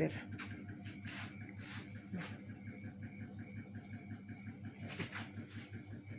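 A cricket's steady high trill, with a few faint clicks and knocks.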